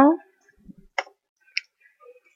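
Two short computer keyboard key clicks, about a second in and half a second apart, as a new line is typed into the code.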